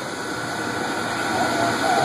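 Crawler cranes' diesel engines running steadily while they hold the heavily loaded ship, slowly growing louder. Faint voices come in during the second half.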